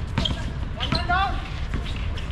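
Basketball bouncing on an outdoor hard court during a game, a few sharp bounces with player movement around them.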